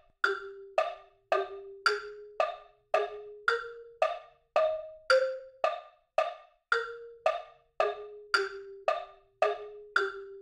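Metronome click on a wood-block sound on every beat at 110 bpm, about two clicks a second, over a quieter sustained melody tone that steps from note to note. Together they play back an Eb-major tune in 3/4 time.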